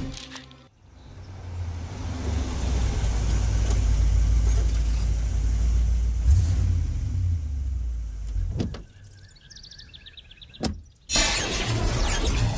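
Film soundtrack effect: a low, steady rumbling drone swells up after a second or so, holds for several seconds and fades out. A faint wavering high tone follows, then a sharp click and a loud sudden hit about a second before the end.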